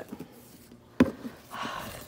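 Satin ribbon being pulled loose from a cardboard gift box: a single sharp tap about a second in, then a soft rustle as the ribbon slides free.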